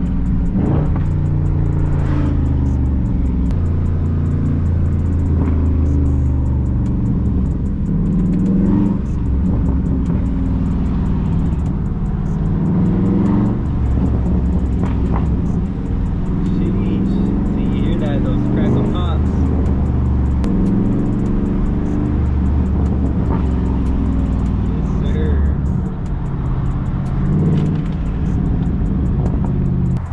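Dodge Charger 392 Scat Pack's 6.4-litre HEMI V8 heard from inside the cabin while driving, the engine note rising and falling several times as it pulls and lets off. Its exhaust burbles, popping and cracking like crazy.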